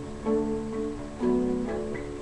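Acoustic string instrument strumming chords, with a new chord struck about a second in.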